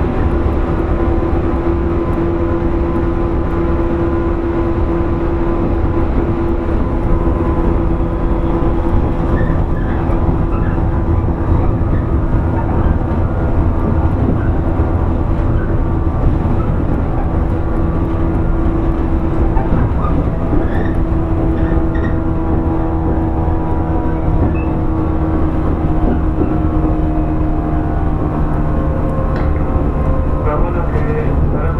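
Inside a JR 115 series 1000 subseries electric motor car running at a steady pace: a steady low rumble of wheels and bogies under a constant motor hum, with a few faint ticks.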